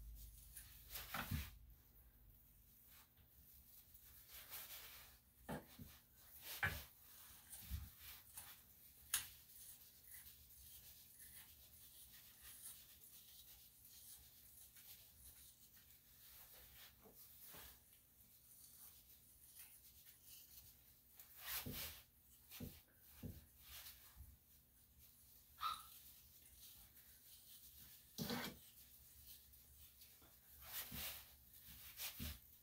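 Near silence, broken by faint, irregular snips, clicks and rubbing of grooming tools as a mat is worked out of a small dog's tail.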